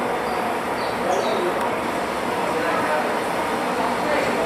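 Steady background noise with no pauses, and a few faint short high chirps in the first second or so.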